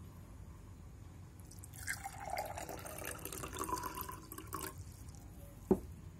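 Water poured into a glass drinking tumbler, the splashing pour starting about a second and a half in and its tone rising in pitch as the glass fills for about three seconds. A short sharp knock follows near the end.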